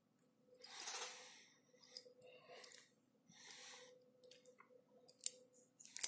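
Faint handling sounds of fingers pressing a stranded wire into a plastic MTA-156 insulation-displacement connector: soft rustles and a few small sharp clicks, most of them in the last second or so.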